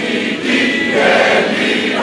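A large crowd singing together in unison, many voices holding sustained notes.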